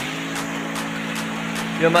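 A vehicle's engine running at a steady, even hum while moving, with a voice starting near the end.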